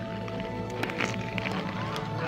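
Film score music: sustained held chords with a few faint clicks.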